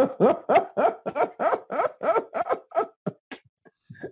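A man laughing heartily: a run of short laugh pulses, about four a second, tapering off about three and a half seconds in.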